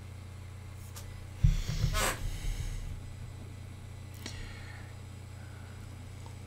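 A steady low electrical hum from the microphone setup, with a loud breath or sniff close to the microphone about one and a half seconds in and a fainter one near the end.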